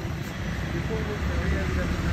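Street background noise: a steady low rumble of traffic with faint voices in the background.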